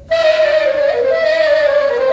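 Solo soprano saxophone: a soft held note dies away, then just after the start a sudden loud, bright entry that holds near one pitch with small dips and bends.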